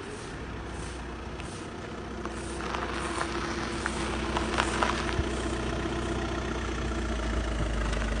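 Volkswagen estate car driving slowly up over a gravel-strewn road and pulling to a stop, its engine running with a steady note from about three seconds in. Small stones crackle and pop under the tyres for a couple of seconds as it rolls in.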